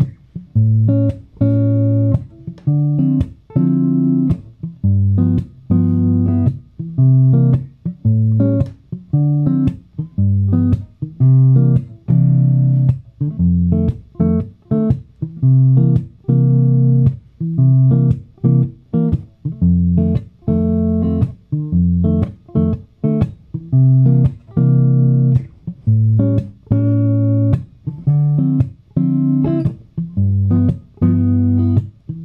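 Gretsch hollow-body electric guitar comping a jazz-flavoured 12-bar blues in C: a bass note then ninth, thirteenth and sharp-five chord stabs, with percussive muted strums between, in a steady rhythm with short gaps between chord hits.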